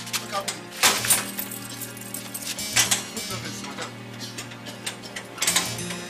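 Background music with a steady low drone. Over it come a few sharp metallic clanks, the loudest near the start and another near the end, from a metal gate being handled.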